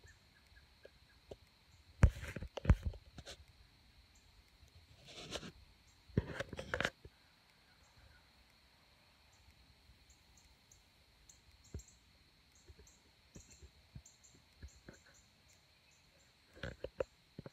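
Quiet woods with a steady high insect drone. Brief rustles and scrapes close by, about two seconds in and again about six seconds in, then only faint scattered ticks.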